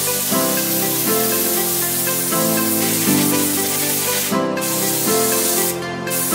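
Instrumental background music over the steady hiss of a steam car-wash nozzle spraying, the hiss breaking off briefly twice near the end.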